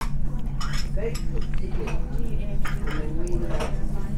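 Cutlery clinking against china plates several times, with faint conversation from other diners and a steady low hum underneath.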